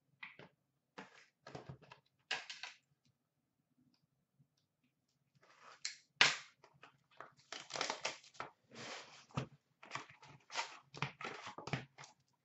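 Cardboard trading-card boxes being handled and opened: a few light taps and scrapes, a sharp snap about six seconds in, then quick runs of rustling and tearing as a sealed hobby box is worked open.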